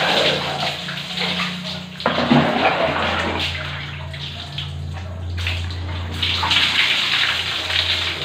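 Water poured from a plastic dipper over a person and splashing onto a concrete floor, pour after pour, as in a bucket bath. The loudest splash starts suddenly about two seconds in, with another long pour near the end, over a steady low hum.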